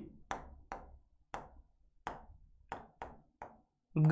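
Writing implement tapping and knocking against a classroom writing board as letters are written: about ten short, sharp, irregularly spaced taps.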